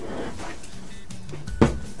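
Background music with a beat, and about one and a half seconds in a single short knock as a potato is set down on a wooden desk.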